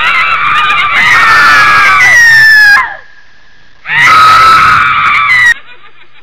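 Two very loud, harsh screams that cut in suddenly: a screamer prank's jump-scare sound. The first lasts nearly three seconds and slowly falls in pitch. The second comes after a short gap and lasts about a second and a half.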